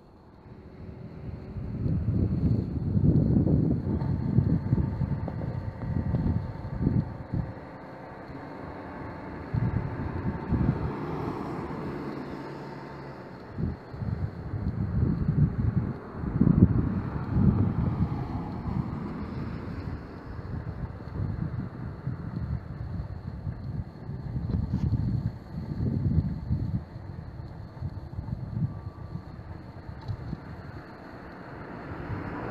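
Wind buffeting the microphone in irregular gusts of low rumble, with a vehicle passing about ten seconds in.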